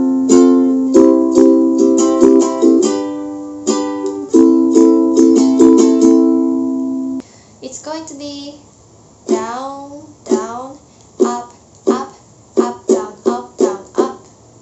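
Soprano-style ukulele strummed in a down-down-up-up-up-down-up-down-up pattern through a chord progression starting on F, ringing for about seven seconds before stopping. A woman's voice follows in short syllables.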